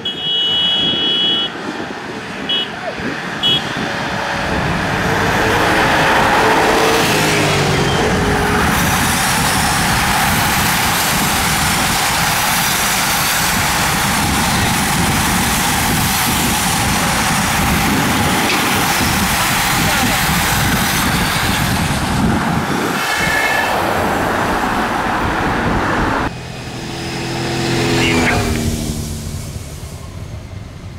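A road-race peloton riding past at close range, a dense rush of tyres on tarmac and whirring drivetrains that builds over the first few seconds and holds for about twenty seconds. The escort motorbikes and lead car pass with their engines. A few short high toots come at the very start, and another engine rises and fades near the end.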